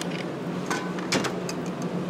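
Aerosol cans clacking as they are handled and picked off a shop shelf: a few sharp knocks, the loudest a little after the middle. Under them runs the steady low hum of the shop's ventilation.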